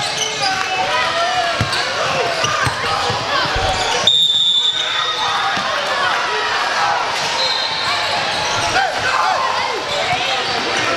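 Live gym sound of a basketball game in a large hall: a ball bouncing on the hardwood, sneakers squeaking and voices calling across the court. About four seconds in, a referee's whistle sounds for under a second, with another short whistle later.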